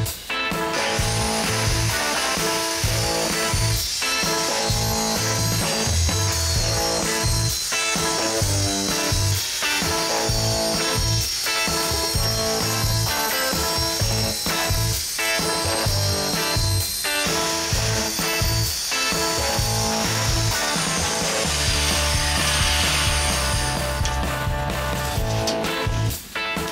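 Circular saw mounted on a vertical panel-saw carriage, running and cutting through a sheet of plywood, with a steady high whine heard through background music.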